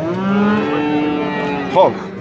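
A young bull mooing: one long call of about a second and a half that sags slightly in pitch, followed near the end by a brief, louder call.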